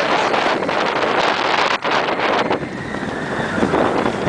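Wind rushing over the microphone of a rider on a moving steel roller coaster, mixed with the train's running noise on the track; loud and steady, easing a little in the second half.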